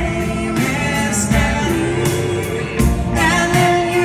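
A band playing live in an arena, with drums, electric guitar and singing coming loud through the PA.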